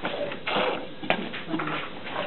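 Squeeze bottle of paint squirting, a short hissing burst about half a second in, followed by a sharp click, with faint children's voices in the background.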